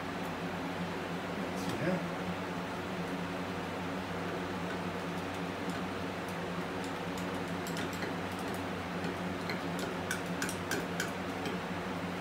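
A spoon clinking faintly against a small glass cup while colorant is stirred into heated soft-bait plastic, the light ticks coming more often in the second half. A steady machine hum runs underneath.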